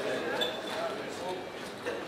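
Murmur of voices at a casino roulette table, with clicks and knocks of chips being gathered and set down on the felt layout; a sharper knock near the end.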